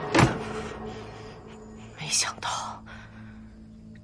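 A quick swish of a wide robe sleeve and a sharp thump on a table just after the start, the loudest sound here. A low drone of background music runs underneath.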